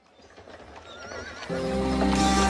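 A horse whinnying with a wavering, shaky pitch over a rising noise as a track opens, then music comes in about halfway through.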